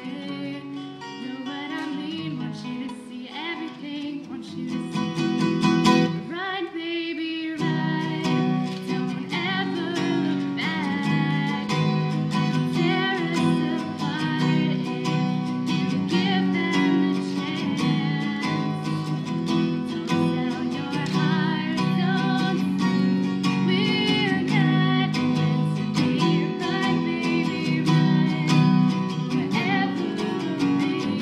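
Steel-string acoustic guitar strummed in chords under a woman's sung lead, playing a four-chord pop medley. The strumming drops out briefly about six seconds in while the voice carries on, then resumes.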